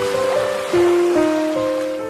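Gentle instrumental background music, a slow melody of held notes, over a wash of sea-wave noise that swells and fades.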